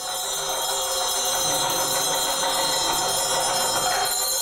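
Metal bells ringing in a dense, steady shimmer, many high tones sounding together with no single clear strike.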